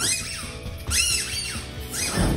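Squeaky dog toy squeezed twice, giving two short high squeaks about a second apart.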